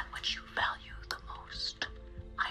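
A woman whispering in a hushed, breathy voice, in short phrases with small mouth clicks, over a faint low music drone.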